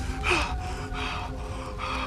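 An animated owl character's voice gasping for breath, about three breaths in two seconds, over soft sustained film score.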